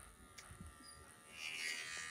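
Small electric clippers buzzing while trimming the long guard hairs on a horse's lower leg. The buzz is faint at first and gets louder and brighter about one and a half seconds in.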